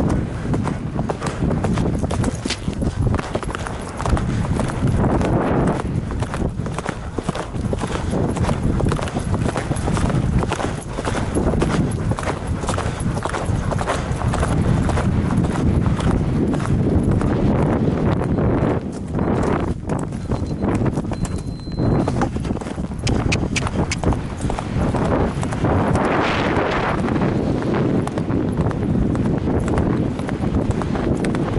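An event horse's hooves beating on turf in a fast, continuous rhythm at the gallop, heard close up from the rider's helmet, with a log fence jumped near the start.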